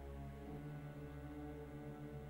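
Symphony orchestra playing a slow passage of held, low chords from a film-score suite.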